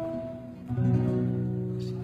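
Acoustic guitar playing: a chord is strummed a little before the middle and left to ring out.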